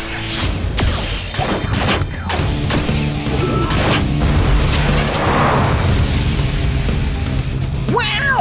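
Cartoon battle sound effects, a string of sharp impacts and explosion blasts as a robot tank's cannon fires, over dramatic background music.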